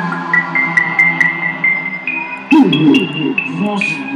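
Synthesizer playing a slow melody of long held notes over a steady low drone. About halfway through, loud voices cut in over it through the microphones.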